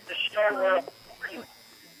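A short spoken phrase early on, then a lull, over a faint steady high-pitched electrical whine.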